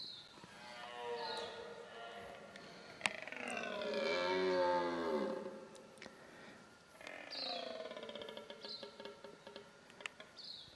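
Red deer stag roaring in the rut: three deep, drawn-out roars, the middle one the longest and loudest, the last breaking into a stuttering series of pulses. A sharp click comes about three seconds in.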